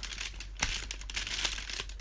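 Cardboard door of a chocolate advent calendar being picked and pushed open with the fingers: a run of small irregular crinkles, scrapes and clicks as the perforated card gives way.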